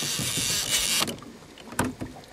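Fishing reel being cranked in fast, a steady high whirring that stops abruptly about a second in as the rig reaches the surface, followed by a sharp click near the end.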